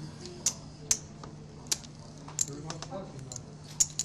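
Poker chips clicking against each other as the dealer stacks and sorts them by hand: about half a dozen sharp clacks at irregular intervals.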